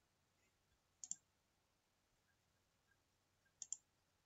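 A computer mouse double-clicked twice, about two and a half seconds apart, against near silence.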